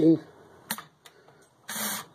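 A man's speech breaking off and starting again, with a pause between that holds one faint click.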